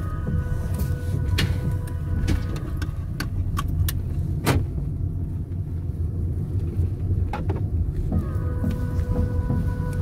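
Low, steady rumble of a car heard from inside the cabin, with a few sharp clicks or knocks scattered through it.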